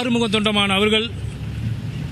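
A man speaking for about a second, then a pause filled by a low steady background rumble.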